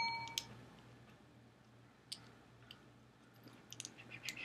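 Faint clicks of a small plastic Takara Tomy Arms Micron Optimus Prime figure's joints and parts being moved by hand as it is transformed into gun mode, a few scattered about two seconds in and a quicker run near the end. A brief tone sounds at the very start.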